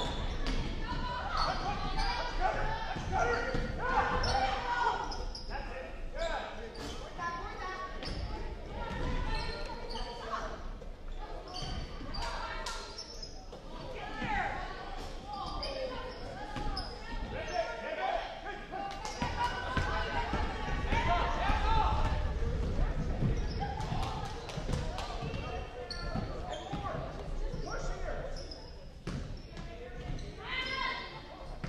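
Basketball bouncing and being dribbled on a hardwood gym floor during play, over indistinct voices of players and spectators in the gymnasium.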